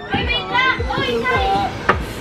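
Several young voices chanting and calling out playfully in a group. Under them runs a low beat thumping about twice a second.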